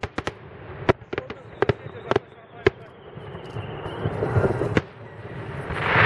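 Fireworks going off: scattered sharp bangs and crackles of the last shells over the first three seconds or so, then crowd voices swelling toward the end.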